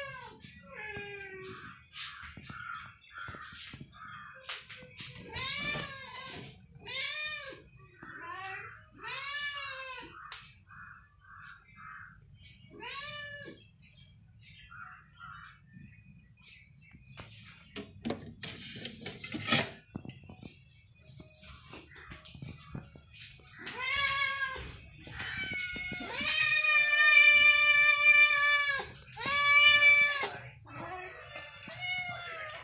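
Domestic cats meowing again and again, begging for food: short arching meows and brief chirps, then one long drawn-out meow near the end. A short clatter comes a little past halfway.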